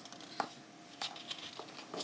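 Paper pages of a colouring book rustling and crackling under the hands as they are handled. There are a few short sharp crackles, the sharpest about half a second in.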